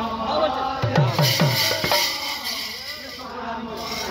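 Kirtan drumming on a two-headed barrel drum: a quick run of deep bass strokes that drop in pitch about a second in, with sharp slaps on the higher head. Voices and a bright high metallic shimmer sound along with it.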